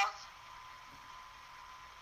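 Pause in a conversation recording: steady background hiss with a thin, unbroken high-pitched tone, after the tail of a voice at the very start.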